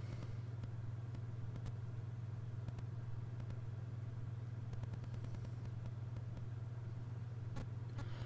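A steady low hum with nothing else over it but a faint click near the end.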